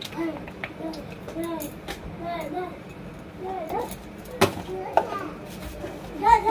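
Children's voices talking in the background, with a few sharp clicks and knocks from kitchenware being handled, the loudest about four and a half seconds in.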